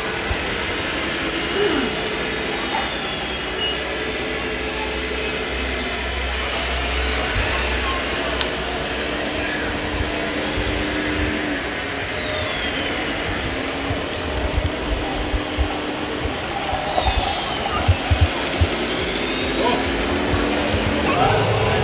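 Radio-controlled hydraulic wheel loader's electric motors and hydraulic pump whining in steady stretches of a second or two, over a background of crowd chatter, with a few low thumps near the end.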